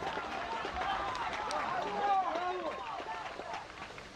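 Several footballers' voices shouting and calling out across the pitch during play, overlapping short cries, with a few short knocks among them.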